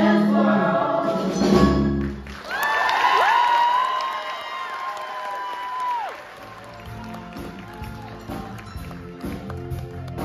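Cast singers and a pit band ending a musical theatre number. The voices slide up into a final note held with vibrato for about three seconds, then cut off with a falling slide, and the sound drops to a much quieter level.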